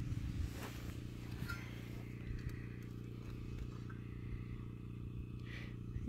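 A few faint clicks as a stopped circular saw's blade is handled against a plastic square, over a steady low hum.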